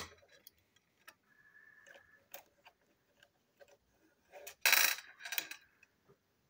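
Small plastic and metal parts of a toy engine clicking and clattering on a tabletop as it is taken apart, with a sharp knock at the start and a louder rattle of parts about five seconds in.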